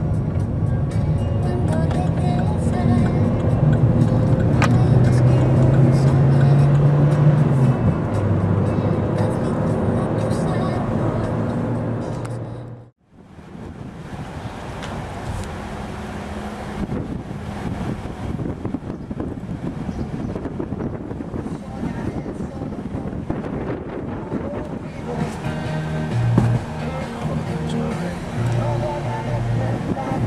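Engine and road noise inside a car's cabin, with music and held tones over it for the first dozen seconds; the sound cuts off abruptly about thirteen seconds in. After the cut, the car's cabin noise continues in city traffic with scattered small clicks and knocks.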